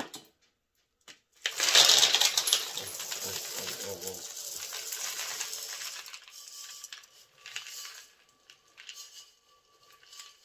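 Dry food being poured onto a kitchen scale: a dense rattle of many small hard pieces falling into the receptacle, loudest as the pour begins about a second and a half in, then steady, thinning out after about six seconds to a few scattered trickles.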